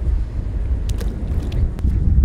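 Wind buffeting the microphone: a steady, loud low rumble, with a few faint clicks.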